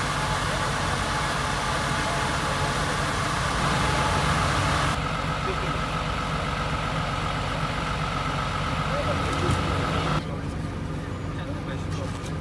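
A fire engine's engine running steadily at idle, with a dense hiss over it. The sound changes abruptly about five seconds in and again about ten seconds in.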